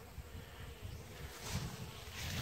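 Honey bees buzzing around small wooden mating-nuc hives: a faint, steady hum under a low, uneven rumble.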